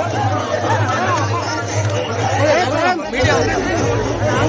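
Crowd chatter: many men's voices talking and calling out over one another at close range, none standing out clearly.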